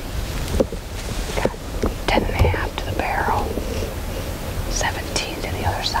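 Hushed whispered speech in short phrases, over a steady low rumble.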